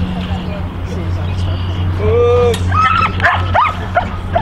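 A dog whines in one drawn-out high note about two seconds in, then gives several short, high yips, over a steady low hum.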